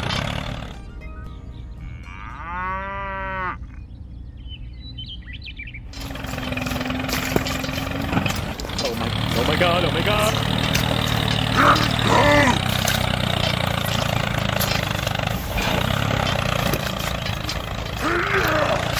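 A steady, engine-like running sound with a low rumble and a noise hiss starts about six seconds in, as the toy tractor drives through muddy water. Before that, a quieter stretch holds one short call, about a second long, whose pitch rises and falls.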